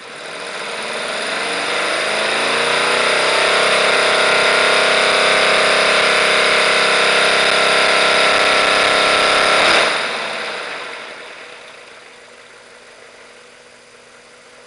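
A modified Visible V8 model engine on its test stand being revved up on its first run-in. Its pitch and loudness climb over the first three seconds, hold steady at speed, then drop away about ten seconds in and fade back to idle.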